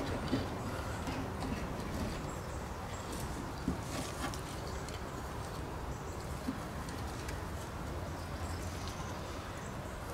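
Wind buffeting the microphone in a steady rumble, with a few faint clicks and taps of the fuel pump sending unit's metal bracket and lines as it is lifted out of the tank.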